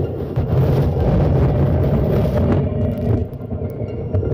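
A loud, steady low rumble with no clear rhythm or pitch, as heard on outdoor field footage.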